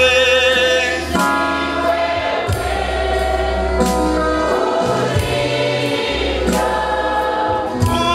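A slow Swahili gospel hymn sung by many voices together, with a man's voice leading through the microphone. A band accompanies with long held bass notes.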